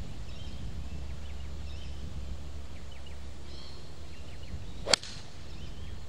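A single sharp crack of a golf club striking a ball from the tee, about five seconds in, after a quiet address. The strike was not clean: the golfer feels he is catching the ball out on the toe.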